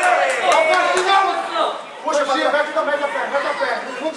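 Chatter of spectators: several voices talking and calling out at once, overlapping, with no clear words and a short lull just before the middle.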